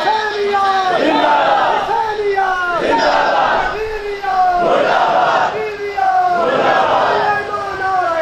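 A crowd of men shouting slogans together in call and response, one loud group shout about every two seconds, four in all, with single voices calling out between them.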